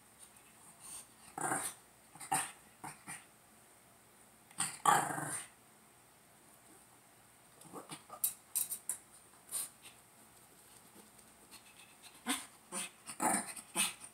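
Shih Tzu growling in short bursts while it paws at a tennis ball on a folding chair, loudest about five seconds in, with short clicks and knocks in between.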